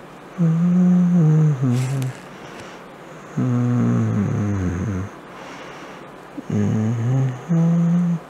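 A person humming low, wordless 'mm' tones in three stretches of one to two seconds each: about half a second in, about three and a half seconds in, and near the end.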